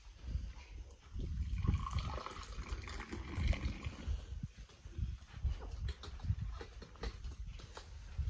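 Tea poured in a thin stream from a teapot held high into small tea glasses: a splashing trickle, strongest in the first half, over a steady low rumble.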